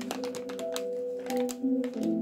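A brown paper bag crinkling and rustling in quick irregular crackles as it is handled, over steady background music.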